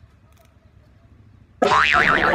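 Low background sound, then about one and a half seconds in a sudden loud sound whose pitch wobbles up and down, like a cartoon "boing" sound effect, with dense loud sound carrying on after it.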